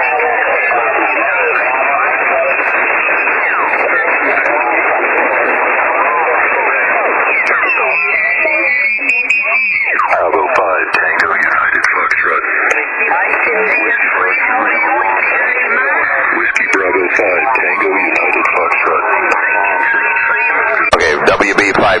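Amateur-radio single-sideband pileup heard through the transceiver's speaker: many stations calling at once, their voices piled on top of one another into a continuous garble, squeezed into the receiver's narrow voice passband. Near the end a couple of steady whistles from carriers sit in the mix.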